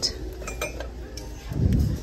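Ceramic dishes clinking lightly as a stack of red ceramic dishes is lifted from among mugs on a metal shelf, with a dull handling thump near the end.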